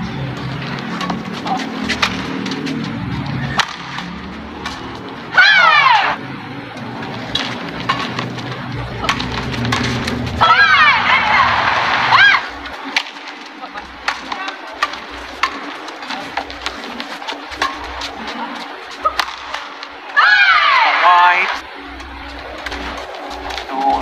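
Badminton rally on an indoor court: rackets strike the shuttlecock with sharp clicks, and players' shoes squeal on the court surface. Three loud squeals with wavering pitch come about 5, 10 and 20 seconds in.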